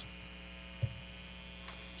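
Steady electrical mains hum in the recording during a pause in speech, with a short low thump just before the middle and a faint click near the end.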